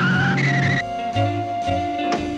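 Cartoon tyre-screech sound effect, high and wavering, as a small car skids to a stop in roughly the first second, over jazzy background music that carries on afterwards.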